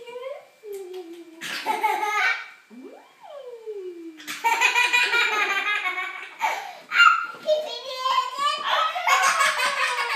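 People laughing hard, in repeated fits of giggling, loudest from about four seconds in; shortly before that a single voice slides up and back down in one drawn-out cry.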